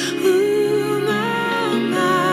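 Live worship band playing a slow passage: electric guitar and bass guitar under sustained chords, with a melody line moving in slow steps.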